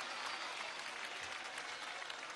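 Large rally crowd applauding: a steady, fairly low patter of many hands clapping.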